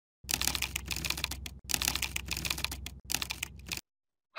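Rapid clattering typing on a keyboard, a quick run of key clicks in three stretches broken off abruptly, over a low hum.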